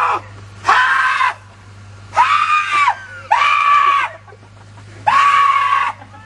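A young man screaming over and over in a high-pitched voice: four separate screams, plus the end of one at the start, each well under a second long and each rising then falling in pitch.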